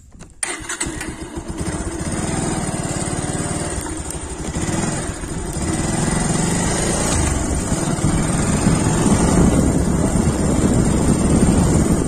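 Motorcycle engine running as the bike is ridden, with wind on the microphone. The sound comes in suddenly just after the start and grows louder toward the end.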